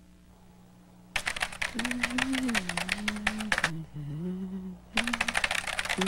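Rapid typing on a computer keyboard, starting about a second in: two runs of quick key clicks with a short pause between, over a low hummed tune that glides up and down.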